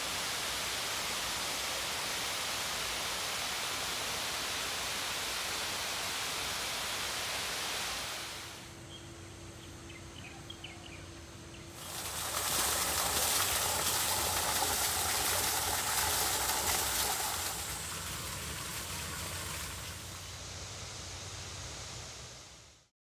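Overflow water from a full reservoir pouring down a concrete dam spillway, a steady rushing noise. It drops quieter for a few seconds partway through, then comes back loud and eases off near the end.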